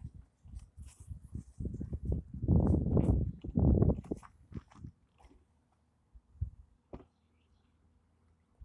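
Footsteps and rustling of clothing or gear as a person walks, uneven and loudest in the middle, dying away about five seconds in as the walking stops.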